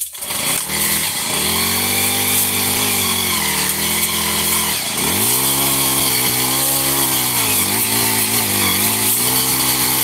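Small gas engine of a rented post-hole earth auger running, coming up to speed in the first second or so. Its pitch dips and recovers about five seconds in and again near the end as the bit takes load in the ground.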